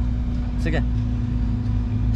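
Steady low rumble of background noise with a constant low hum, under a short spoken "theek hai" less than a second in.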